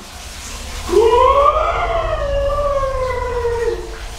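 A man's voice holding one long drawn-out note for nearly three seconds, rising at first and then sliding slowly down in pitch.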